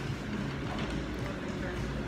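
Restaurant room noise: a steady low hum with faint background voices.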